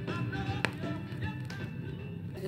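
Soul record playing quietly on a turntable, with one sharp click about two-thirds of a second in.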